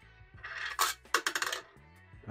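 Steel marble rolling and clattering on the metal wire rails of a kinetic-art perpetual motion machine, with a quick run of sharp metallic clinks about a second in.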